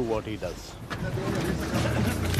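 A boat engine running with a low, steady drone that comes in about one and a half seconds in, after a brief bit of a man's voice at the start.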